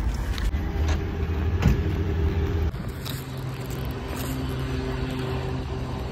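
Street traffic: a motor vehicle running nearby, a low rumble that settles into a steady engine hum about three seconds in.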